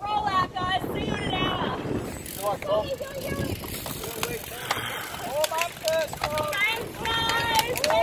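A group of road cyclists setting off: scattered sharp clicks of cleats snapping into pedals and freewheels ticking, with the riders' voices chattering over it.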